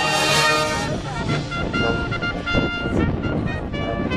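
Marching band playing brass and percussion: a loud, full held chord in the first second, then quieter sustained notes over light drumming.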